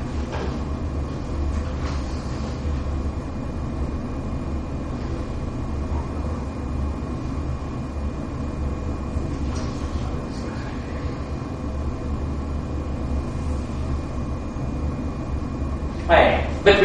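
Steady low room hum with a thin, constant high-pitched whine over it, and a few faint strokes of chalk on a blackboard around ten seconds in.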